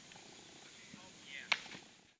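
A single sharp pop about a second and a half in: a thrown baseball smacking into a leather fielder's glove, over faint outdoor background.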